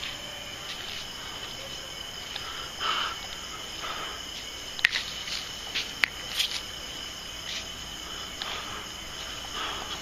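Night insects, crickets by the sound, keeping up a steady high trill. A few soft rustles and a couple of sharp clicks come through the middle.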